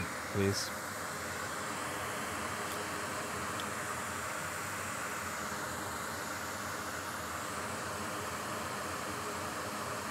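Steady, even hiss of air from a fan, unchanging for several seconds.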